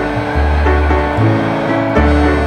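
Background music: held melodic notes over a deep bass line that shifts pitch every second or so.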